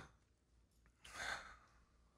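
A single audible breath from a man, close to a headset microphone, about a second in and lasting about half a second.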